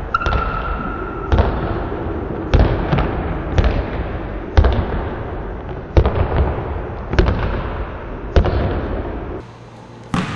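Basketball being dribbled on a hardwood gym floor, each bounce a sharp slap that echoes around the hall, roughly once a second. The bounces stop shortly before the end.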